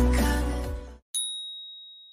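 Outro music fading out, then, after a moment of silence, a single high, clear ding sound effect about a second in that rings on and fades away.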